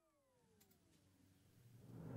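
Near silence: the faint tail of a falling tone fades out over the first second or so, then a swell of music starts to rise near the end.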